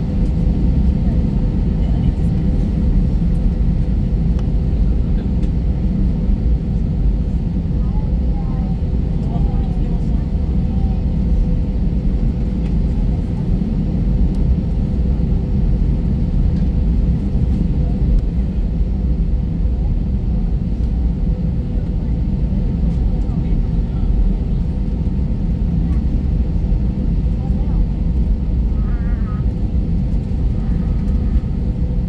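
Steady low rumble of an Airbus A320neo heard from inside the passenger cabin, with a faint steady hum over it.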